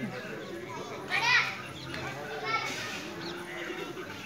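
Background voices of children and people, with a loud high-pitched shout about a second in and a shorter call near the end.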